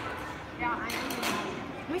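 Indistinct voices of boys talking in a large, echoing room, with a word starting right at the end.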